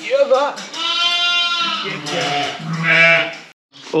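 Sheep bleating: two long bleats, each about a second, then the sound cuts off abruptly shortly before the end.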